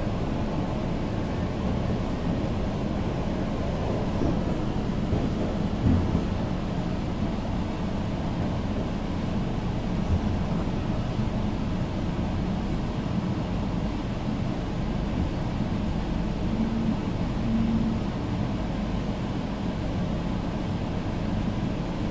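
Shanghai Metro Line 4 train running between stations, heard from inside the passenger car: a steady low rumble of wheels on track and running gear.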